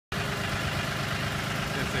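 Farm tractor engine idling steadily, a low even hum.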